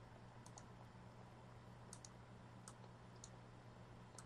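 Near silence with a low steady hum and a few faint, sharp clicks spread over the four seconds.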